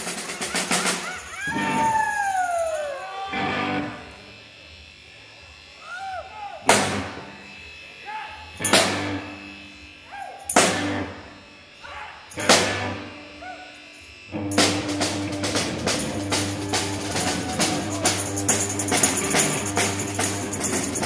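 Live rock band: the guitar and drums stop short, a couple of falling sliding tones follow, then a snare drum is struck four single loud times about two seconds apart, each ringing out, before the guitar and drums crash back in together near the end.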